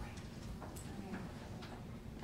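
Low room noise with a handful of faint, scattered clicks and taps.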